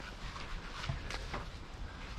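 Quiet outdoor ambience with a few faint, irregular clicks and taps.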